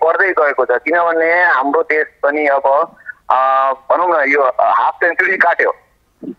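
Only speech: a man talking steadily with short pauses, his voice coming over a telephone line.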